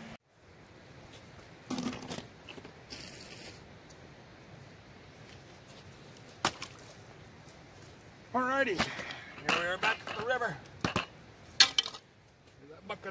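A faint steady outdoor background broken by a few scattered sharp knocks and crunches. About eight seconds in, a person's voice is heard for about two seconds, and two sharp clicks come near the end.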